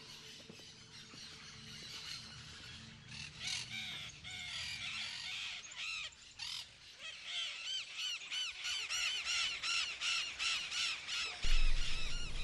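Parakeets calling in a tree: short, repeated chattering calls, sparse at first, becoming dense and continuous from about halfway through.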